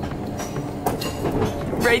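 Train carriage interior while the train runs: a steady rumble of the moving train with a few faint clicks of the wheels on the rails.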